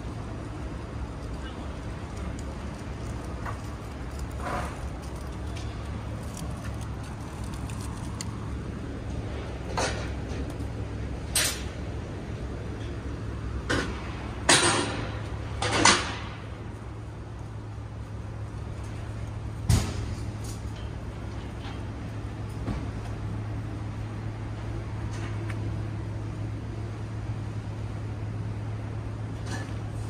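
A steady low hum, with a few short, sharp noises clustered around the middle and a single knock a little later.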